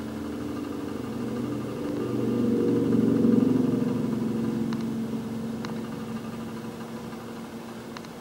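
A low mechanical hum made of several steady pitched tones, swelling to its loudest about three seconds in and then fading, with a couple of faint clicks.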